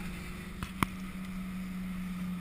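School bus engine running with a steady low drone and rumble, heard inside the bus cabin. A single sharp click cuts through about midway.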